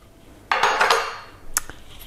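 A glass jar of rolled oats being handled: about half a second in, a short rush of oats rattling against the glass, then a single light clink.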